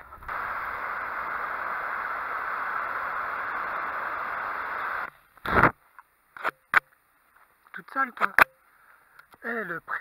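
A steady, even hiss of noise for about five seconds, cutting in and out abruptly, followed by a few short, sharp clicks and knocks.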